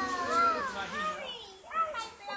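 High-pitched children's voices calling out excitedly, their pitch sliding up and down, in two bursts, the second about one and a half seconds in.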